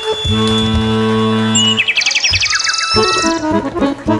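Two accordions playing a live duet: a held low chord, then a quick high-pitched rising run in the top register, then fast rhythmic playing starts again about three seconds in.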